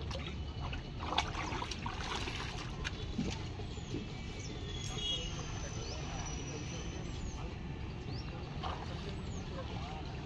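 Outdoor ambience by a pond: a steady low rumble with faint voices, a few short clicks, and scattered short high chirps.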